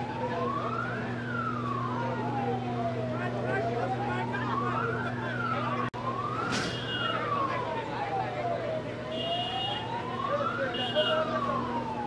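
Emergency vehicle siren wailing, gliding slowly up and down about once every four seconds, over a steady low hum and crowd voices.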